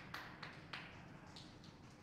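Near silence: a faint background hiss with three soft clicks in the first second.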